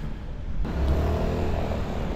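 Street traffic: a road vehicle's engine running as it passes, a low rumble that swells about half a second in.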